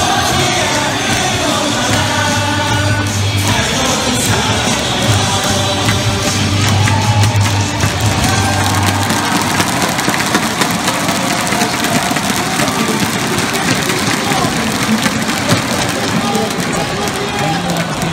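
A baseball player's cheer song played over a stadium PA, with a crowd of fans singing and shouting along. A heavy bass beat is strongest for the first half.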